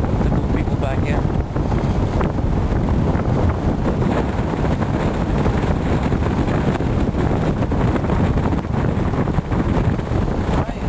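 Steady wind buffeting the microphone over the low rumble of a vehicle driving on a gravel road, heard from the open back of a pickup truck.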